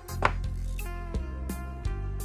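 Background music with plucked-string notes, and one sharp wooden clack of a xiangqi piece being set down on the board, a move sound effect, about a quarter second in.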